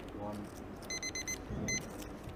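An electronic timer beeps four quick times and then once more just after, as a poker player's decision clock runs out after a spoken countdown.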